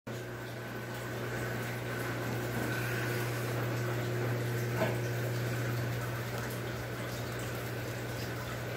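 Steady bubbling and trickling of water in a crocodile enclosure tank, over a constant low hum, with a single small click about five seconds in.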